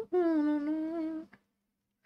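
A woman humming a tune in long, held notes, stopping about a second and a half in.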